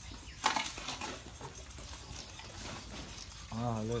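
Hand saw rasping on an elephant's ivory tusk, with one sharp, loud stroke about half a second in and fainter scraping after it; a man starts talking near the end.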